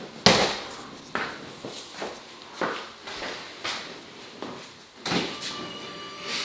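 T-shirt rustling as it is pulled on, with a series of short swishes and soft knocks from handling. The sharpest is just after the start, and another comes about five seconds in.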